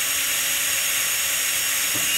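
Cordless drill running steadily at speed, a number 51 bit drilling out the brass orifice of a gas valve to enlarge it for natural gas.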